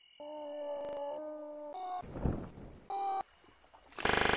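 An animal-like call: a steady pitched note held for about a second and a half, followed by a few short sounds that start and stop abruptly.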